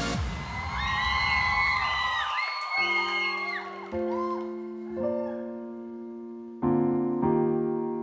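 The tail of an electronic intro jingle with swooping synth sounds, then a Yamaha grand piano playing slow, sustained chords, five struck in turn, each left to ring and fade.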